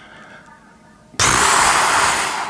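A long, breathy exhale blown close to the microphone, starting suddenly about halfway through and lasting just over a second.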